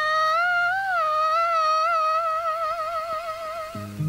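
Wordless female vocalise from a 1960s Tamil film song: one long high note hummed with a wavering vibrato, lifting briefly about a second in. Low accompanying instruments come in just before the end.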